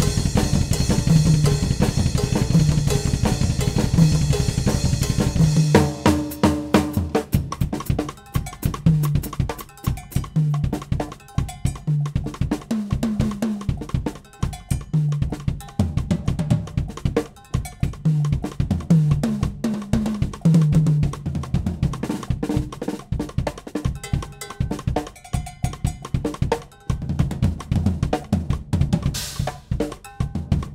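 A Yamaha drum kit played hard: a dense groove under a continuous cymbal wash for the first six seconds or so, then sparser, syncopated hits on drums and cymbals with short gaps between them.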